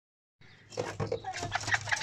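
Bantam chickens clucking in a coop, mixed with short scratchy clicks and rustling as a hen flaps about. The sound starts about half a second in.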